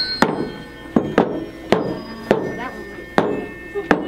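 Metal tuning forks struck one after another against rubber pads: about seven sharp knocks at irregular intervals, with the forks ringing on as thin, steady tones between them.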